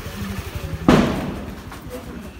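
A motor scooter passing close by with a low engine rumble. About a second in there is a single sharp, loud thump that fades within half a second.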